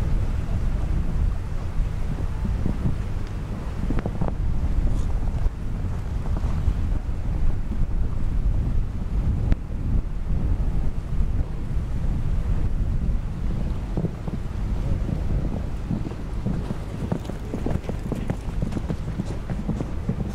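Wind buffeting the microphone, a steady low rumble, over the faint hoofbeats of a horse cantering on sand.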